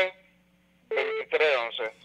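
Speech only: a short pause, then a voice, with the Radio and Telephone tags pointing to a phone line, reading out digits of a phone number.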